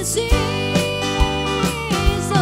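Live worship band playing a praise song: women's voices singing together over strummed acoustic guitar, keyboard chords and a drum kit keeping a steady beat.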